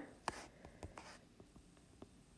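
Faint taps and light scratching of a stylus handwriting on a tablet screen.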